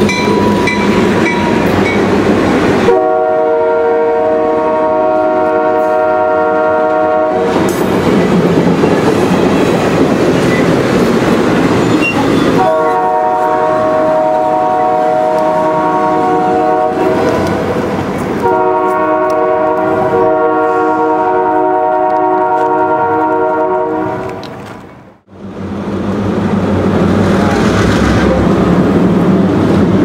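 Train noise from EMD E8A passenger locomotives passing at speed, then three long blasts of their multi-chime Nathan K3LA air horn, each four to five seconds, as the train moves away. The sound drops out briefly near the end and returns as steady train running noise.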